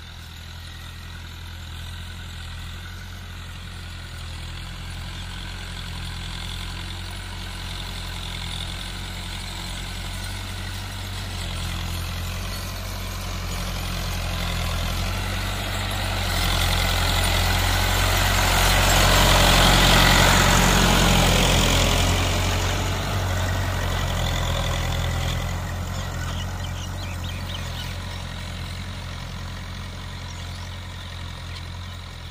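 Farm tractor's diesel engine running steadily while it pulls a tillage implement through the soil. It grows louder as the tractor approaches, is loudest about two-thirds of the way through as it passes close, then fades as it moves away.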